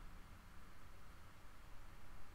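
Faint steady low hum and hiss of background room tone, with no distinct events.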